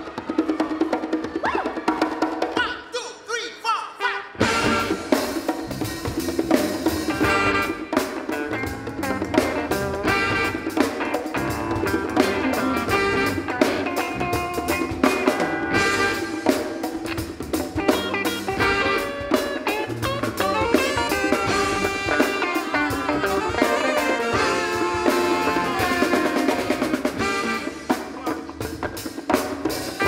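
Live band playing an instrumental number with drum kit, conga drums, electric guitar and horns. About three seconds in the band drops to a brief quieter passage, then the full band with drums comes back in.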